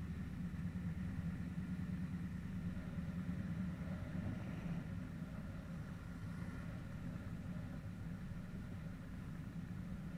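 Engine of a classic Mopar car running steadily at low revs as the car rolls slowly, heard from a camera on its hood.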